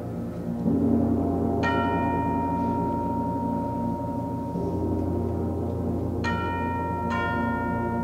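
Concert band holding low sustained wind chords, with chimes (tubular bells) struck over them. One stroke comes about a second and a half in, and two more near the end, each left ringing.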